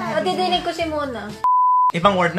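A person's voice, then about a second and a half in, a steady high-pitched censor bleep that replaces all other sound for about half a second.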